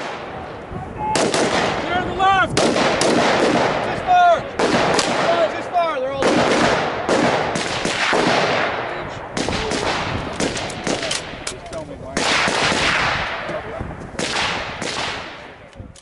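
Pistol and carbine gunfire in rapid strings of shots, several shooters firing close together, with brief gaps between strings and fading out at the end.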